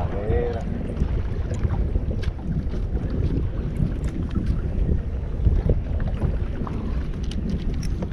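Wind buffeting the microphone: a steady low rumble, with a few faint scattered clicks.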